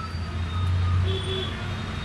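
Street traffic noise: a low engine rumble that swells about halfway through and then eases off.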